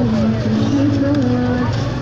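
A man's voice talking over a steady low rumble of street traffic.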